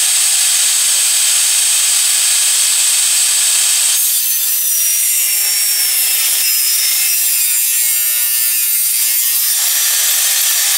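Table saw ripping a thin sheet of bendy plywood, a loud steady high-pitched cutting noise as the sheet is fed through the blade. About four seconds in the tone changes and a slowly falling whine runs under the cut.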